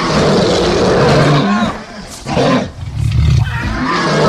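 Two long, loud growling roars from a creature, with a short break between them.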